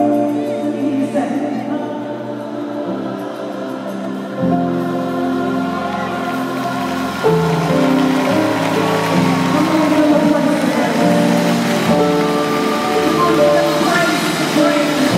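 Gospel keyboard playing sustained chords that change every second or so. Low bass notes come in about four and a half seconds in, and it gets fuller and louder about seven seconds in.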